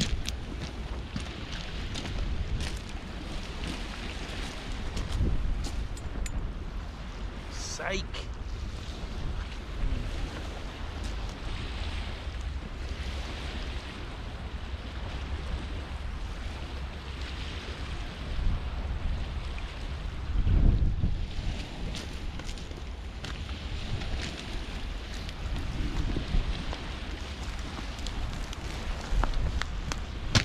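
Wind buffeting the microphone on an open estuary shore, with waves washing on the shingle beneath it. A short falling whistle comes about eight seconds in, and a louder gust about twenty seconds in.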